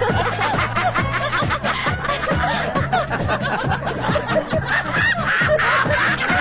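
Men laughing heartily and without pause, in rapid 'ha-ha' bursts, over background music.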